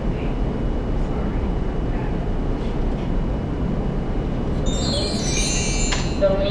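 Steady low rumble of room background noise. Near the end, a cluster of high ringing tones begins.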